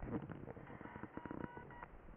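Faint electronic tones that step between a few pitches, over low room noise with a few light clicks.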